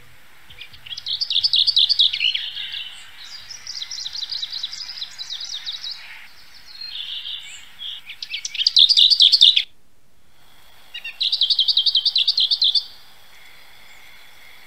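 A songbird sings several phrases of rapid, high trills a second or two apart, with the loudest phrase just before the sound cuts out completely for a moment about two-thirds of the way through.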